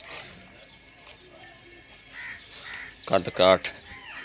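Faint bird calls about two seconds in over a quiet yard, then a man's voice speaking briefly near the end.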